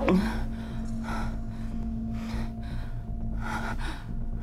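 A woman gasping for breath: a sharp gasp at the start, then ragged breaths about once a second, over a steady low hum.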